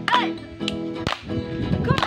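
Acoustic guitar strummed in chords, broken by sharp slaps about every half second. Two short, high, falling cries sound over it, one near the start and one near the end.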